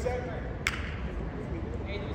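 Faint indistinct voices over gym room noise, with one sharp click about two thirds of a second in.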